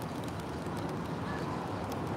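Steady patter of light rain, an even outdoor hiss with no distinct events.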